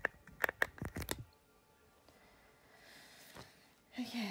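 Handling noise: a quick run of sharp clicks and rustles in the first second, then quiet room tone with a single tap about three and a half seconds in.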